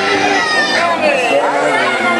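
Many children's voices chattering and calling out over one another, a loud overlapping babble with no clear words.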